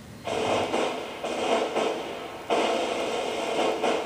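A rushing, static-like noise from a CRT television's speaker as a VHS tape plays, coming in three stretches that each step up in level.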